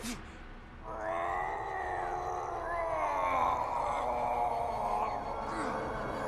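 A sharp hit right at the start, then a man's long, strained groan of effort from about a second in, held unbroken and wavering slowly in pitch.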